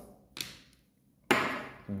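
A small jar of soldering flux and its plastic lid being set down on a tabletop: a light knock, then about a second later a sharper, louder knock that dies away briefly.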